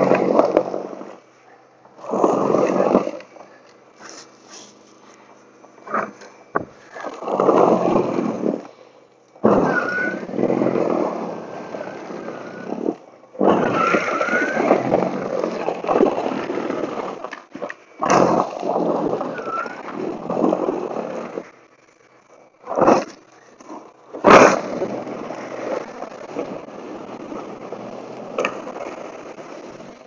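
Toro Power Clear e21 60-volt battery snow blower running in repeated bursts of a second or few, its auger scraping along the pavement and throwing packed snow and ice, with quieter gaps between passes. A sharp knock about 24 seconds in.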